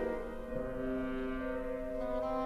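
Orchestral film-score music: slow, held chords, with a new chord entering about half a second in.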